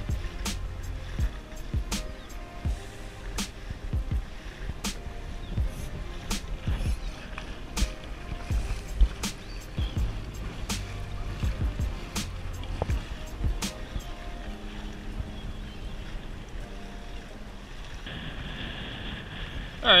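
Background music with a steady beat: regular drum hits under held synth notes.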